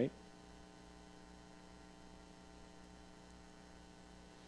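Faint, steady electrical mains hum, a low buzz that holds unchanged throughout.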